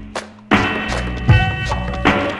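Instrumental hip-hop beat with sharp, evenly spaced drum hits and pitched notes. The beat drops out briefly about a third of a second in, then comes back on a strong hit.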